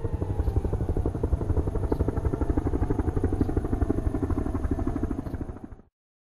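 An engine-like mechanical throbbing, rapid and even at about ten pulses a second, used as an effect in a song's outro. It fades out near the end into silence.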